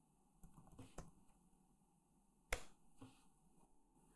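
Near silence with a few faint computer-keyboard key clicks in the first second. A single sharper click comes a little past halfway, followed by a weaker one.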